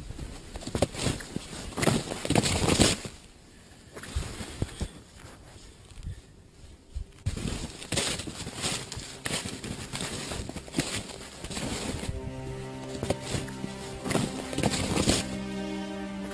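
Snowshoe footsteps crunching in deep snow, about two steps a second, with a quieter pause in the middle. From about twelve seconds in, music with held chords comes in over the steps.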